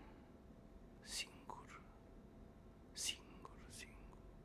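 Quiet pause in a man's slow spoken recitation, broken twice by short breathy hisses from his voice, about a second in and about three seconds in.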